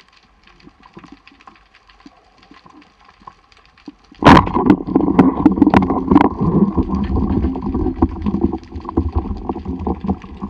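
Underwater ambience with faint scattered clicks, then about four seconds in a sudden loud crack from a speargun being fired. Loud continuous rushing water and knocking follow as the diver handles the gun and swims upward.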